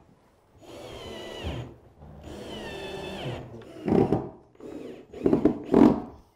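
Cordless drill driving screws into the chipboard cabinet panel to fix the foot brackets: two short runs, the motor's whine dropping in pitch each time the trigger is let go. Then a few louder thumps.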